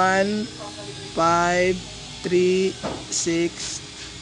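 A man's voice speaking in short phrases, with pauses between them. No other clear sound.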